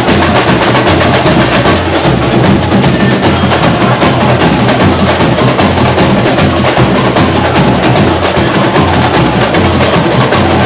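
A samba school drum section (bateria) playing live: deep bass drums pulse in a repeating pattern under a dense, fast rattle of snare-type drums and small percussion. It is loud and keeps going without a break.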